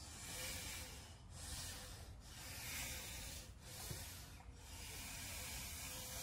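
Hard, hissing breaths from arm wrestlers straining against each other, coming about once a second with short pauses between them.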